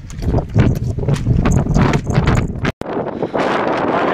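Footsteps crunching and clattering on loose rock and scree, irregular knocks of boots and stones, over the rumble of wind on the microphone. About three-quarters of the way through the sound cuts out for an instant and gives way to a steadier wind hiss.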